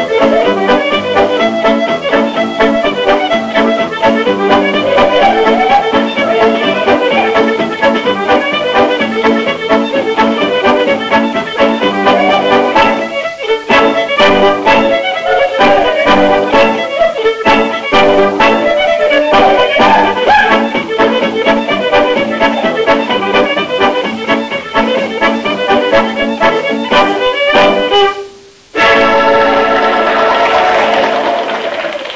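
Scottish fiddle music: a quick, busy tune on the violin with accompaniment, heard through a mono domestic tape recording of the broadcast. The music breaks off briefly near the end.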